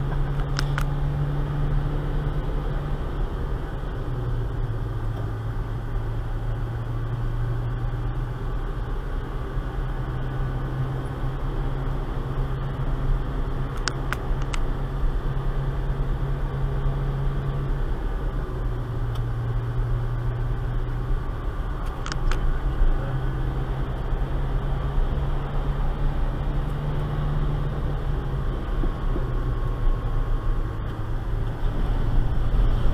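Cabin sound of a stock 63 hp Ford Festiva with a manual gearbox towing a trailer down a steep grade: a steady engine drone that steps up and down in pitch a few times, over tyre and road noise. A few short sharp clicks sound through the cabin.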